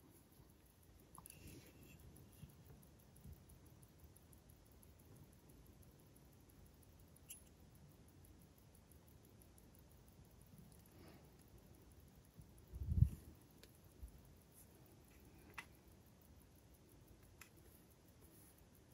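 Faint handling sounds of a wristwatch being worked on at the bench: a few small sharp clicks and one louder dull thump about two-thirds of the way through.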